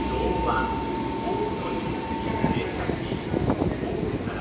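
JR Central 311 series electric train running in along the platform to stop, its wheels rumbling on the rails. A steady whine cuts off about two and a half seconds in. A faint high squeal starts at about the same time, and a quick run of wheel knocks on the track follows.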